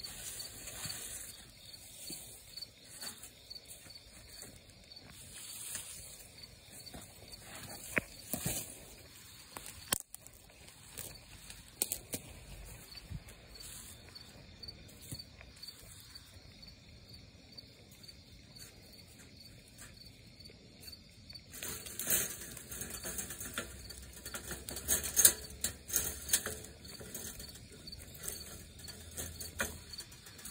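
Crickets chirping steadily in an even, rapid pulse. Scattered rustling and knocks throughout, growing busier and louder in the last third as the leafy brush and wire live trap are handled.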